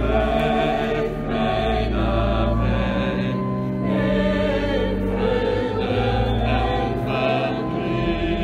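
Church choir singing a slow sacred piece, with long held notes over steady low sustained tones.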